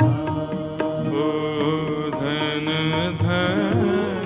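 Devotional bhajan: a solo voice sings long, wavering held notes over instrumental accompaniment with drum strokes.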